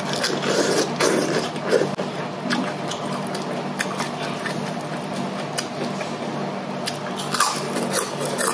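Close mouth sounds of eating rice vermicelli with lettuce: noodles slurped in, then wet chewing and crunching with many small sharp clicks. A steady low hum runs underneath.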